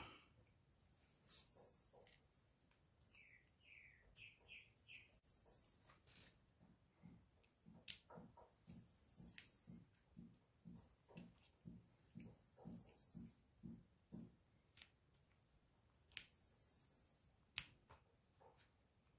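Faint sounds of a small hand screwdriver running a screw into the plastic cell holder of a Ryobi battery pack: a run of soft, evenly spaced creaks, about two or three a second, through the middle, with a few sharp clicks.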